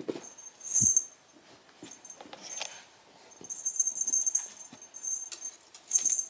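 Cat wand toy being swatted and dragged across the carpet, giving off short bursts of high-pitched ringing, with a soft thump about a second in.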